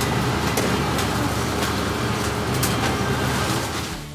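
Commercial popcorn machine running: a steady motor and blower hum with scattered sharp pops as kernels pop and popped corn spills out of the drum.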